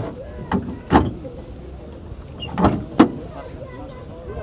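Four short knocks or thuds over a steady low background rumble. Two come close together within the first second, two more come near the end, and the last is the sharpest and loudest. Faint voices can be heard between them.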